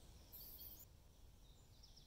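Faint birdsong: high chirping phrases, with one very high, thin note about half a second in, over a low rumble.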